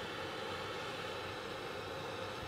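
Butane gas torch burning with a steady, even hiss.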